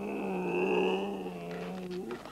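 A reindeer puppet's long, rough groan, voiced by a person: one held note of about two seconds that barely changes in pitch and tails off near the end.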